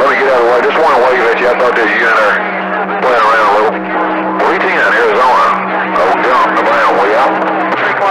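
Voices talking over a CB radio receiver, not clearly understood, with steady low humming tones underneath; a second, higher tone joins about halfway through and drops out near the end.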